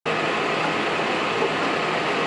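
John Deere 7530 tractor running steadily while pulling a hoe through the wheat, heard from inside the cab: an even engine and cab drone.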